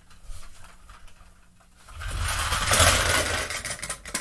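1:24 scale diecast cars rolling fast across a hardwood floor, their wheels rumbling and rattling for about a second and a half starting about halfway in, after a few faint clicks.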